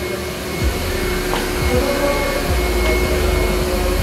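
Steady rushing noise of a running machine, carrying a faint steady whine.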